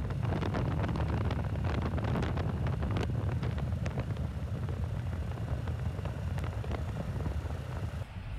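Motorcycle riding at road speed: a steady low rumble of engine and wind buffeting the microphone, with scattered sharp clicks.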